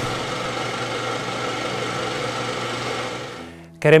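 Electronic music sting of a TV programme ident: a dense layer of held, shimmering tones that fades out near the end, as a man's voice begins.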